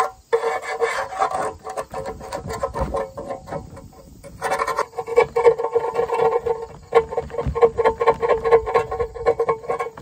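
Metal scraper scraping old gasket material off the flange of an engine oil pan: quick repeated rasping strokes of metal on metal with a steady ringing tone. The strokes ease off about two to four seconds in, then resume harder.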